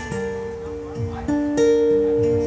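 Acoustic guitar played between sung lines: a run of plucked notes, each ringing on, stepping to new pitches every half second or so, with a louder strummed chord about one and a half seconds in.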